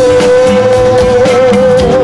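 Live ska-funk band playing, with one long held note that wavers slightly in pitch above the accompaniment.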